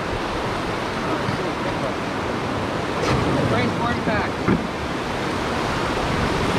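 Whitewater rapids rushing steadily around a raft, with faint voices midway through and a sharp knock about four and a half seconds in.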